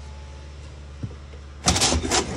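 Foot-pedal flush of an RV toilet: a click about halfway through as the pedal goes down, then a short rush as the flush opens near the end, over a steady low hum.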